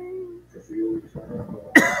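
A held sung note trails off, then the singer coughs loudly near the end.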